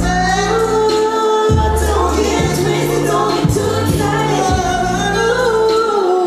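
Live pop/R&B performance: a woman singing a melodic line with long held notes over a backing track of deep held bass notes and drum hits, played loud through the venue's sound system.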